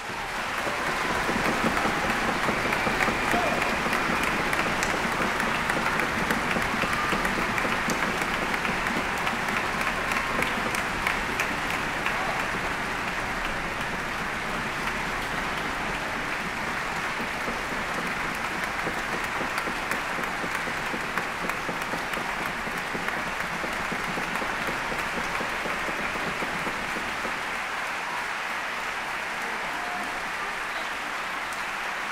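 Concert-hall audience applauding after an orchestral performance. The applause builds within the first second or two, is strongest for about the first twelve seconds, then eases slightly and carries on steadily.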